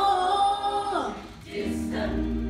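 Choir singing with band accompaniment: a held chord for about a second, then the voices slide down together and fade briefly before a new low, steady chord comes in at the end.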